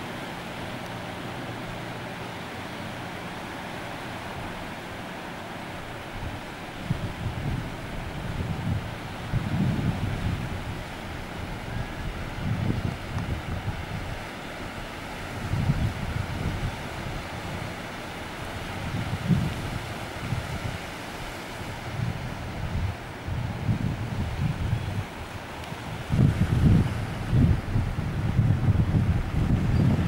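Wind buffeting the camcorder microphone in repeated gusts that come in about seven seconds in and grow stronger toward the end, over a steady wash of choppy sea. A low steady hum sits under the first few seconds.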